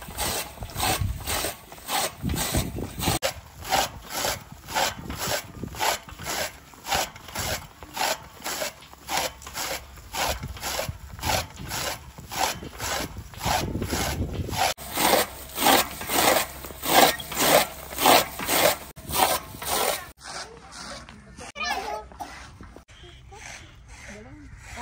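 Hand-cranked chaff cutter with an iron flywheel chopping green fodder, its blade slicing through the stalks in a steady rhythm of about two to three chops a second. The chopping stops near the end, giving way to softer, irregular sounds.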